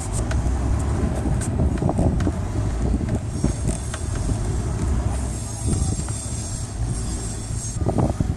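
Small clicks and rubbing as a flexible plastic tube is pushed onto a fitting on a PVC pipe, over a steady low rumble. A faint high whine comes in about three seconds in and stops near the end.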